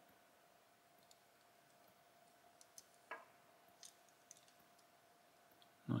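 Near silence with a few faint, scattered clicks and taps of a small die-cast toy car being turned over in the fingers, over a faint steady hum.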